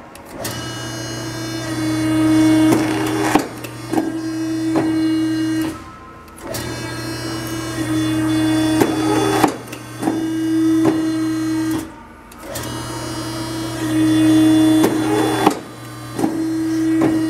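Challenge Model 20 hydraulic paper cutter running through about three cutting cycles: a steady hum from its hydraulic pump with a whine over it, louder in the middle of each cycle as the clamp and knife work, with a few clicks, and a brief stop between cycles.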